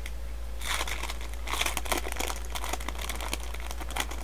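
A baseball card pack's wrapper crinkling and the cards rustling as they are handled, in a few irregular spurts, over a steady low hum.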